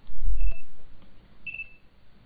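A low thump on the microphone, then two short high-pitched electronic beeps about a second apart, the second louder, as the video chat connects to a new partner.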